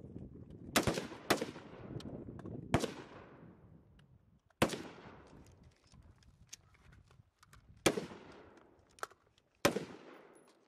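Single rifle shots from AR-pattern rifles on an outdoor firing line. Six loud shots come at irregular spacing, from about half a second to three seconds apart, each trailing off in an echo, with fainter shots from other rifles along the line in between.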